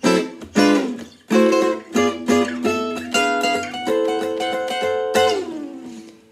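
Gypsy jazz acoustic guitar playing four-note chords on the top four strings, weaving between A minor 6 and diminished 7 inversions up and down the neck. A few separate strums come first, then quicker chord changes, ending on a chord that rings out a little past five seconds in.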